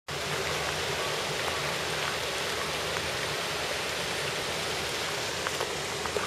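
Steady, even hiss of water, cutting in abruptly and holding at one level throughout.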